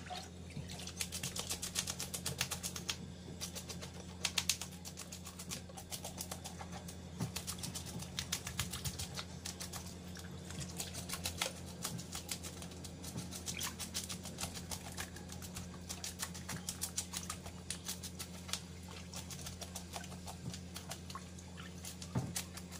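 Tap water running into a stainless steel sink while hands rub and rinse a whole fish, giving a rapid, irregular patter of small splashes and wet slaps.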